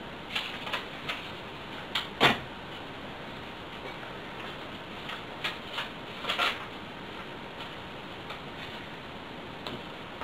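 A few short clicks and rustles from hands tying and tugging fishing line on a seed-bead bracelet worn on the wrist, over a steady low hiss.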